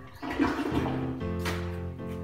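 A toilet being flushed: a short rush of water lasting about a second, starting just after the beginning, over steady background music.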